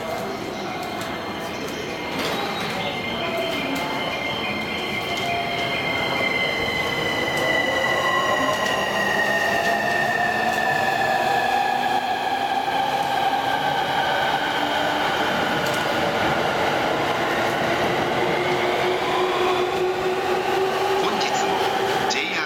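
An electric commuter train pulling away and gathering speed, its traction motors giving off an inverter whine of several tones that slide in pitch, one falling and one rising. Under the whine is a steady rumble of wheels on rail that grows louder about two seconds in.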